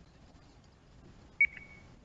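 A single short electronic beep about a second and a half in, one clear tone that fades out over about half a second, over faint room tone.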